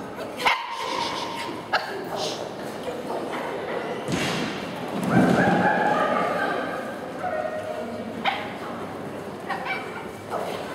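Dog barking during an agility run, with several sharp single barks and a louder sustained stretch about five seconds in. Voices are heard in the background.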